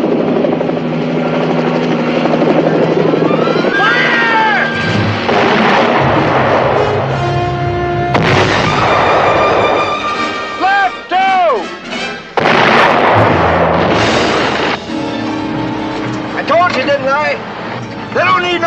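Mortar barrage on a film soundtrack: heavy explosions, each starting suddenly, with the loudest bursts about eight, twelve and fourteen seconds in, mixed with a dramatic orchestral score.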